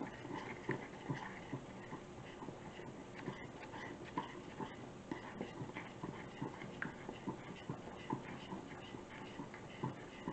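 A metal spoon stirring dressing in a small glass bowl: faint, quick, irregular ticks and scrapes of the spoon against the glass.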